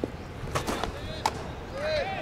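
A baseball pitch: a few scuffs and thuds as the pitcher's stride foot lands in the dirt, then the ball popping sharply into the catcher's mitt a little over a second in.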